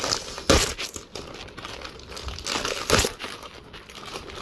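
Plastic Oreo cookie-pack wrapper being torn open and crinkled by hand. There are two louder tears, about half a second in and around three seconds in.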